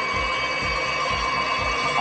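Hiab X-HiPro 237 knuckle boom crane's hydraulics running as the boom unfolds: a steady whine of several held high tones. A low pulse repeats about four times a second underneath.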